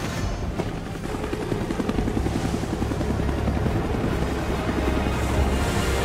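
Action-film sound mix: music with a fast, even pulsing over a deep rumble, building slowly in loudness.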